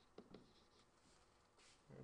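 Near silence with a few faint scratching strokes of a stylus writing on a tablet, mostly early on.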